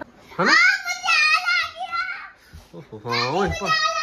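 A young girl's high-pitched voice calling out loudly twice: the first call sweeps up about half a second in and is held for nearly two seconds, the second starts about three seconds in.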